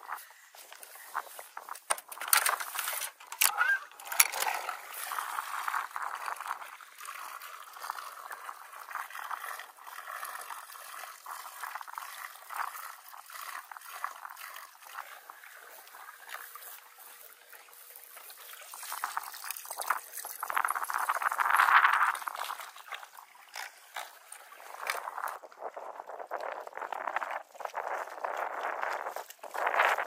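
Water sloshing and gurgling against the hull of a small plastic mini pontoon boat on open water. The sound is irregular, with scattered small splashes, and it swells louder about two-thirds of the way through.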